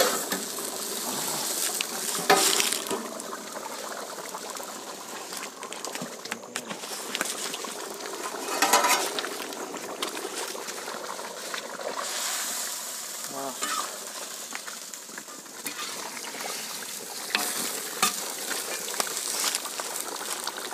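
Turkey curry bubbling and sizzling in an uncovered iron kadai over a wood fire: a steady hiss, broken by a few sharp knocks, the first as the metal plate lid comes off.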